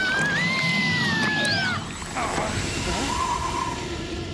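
A woman's long, high-pitched scream that breaks off about two seconds in, over eerie background music.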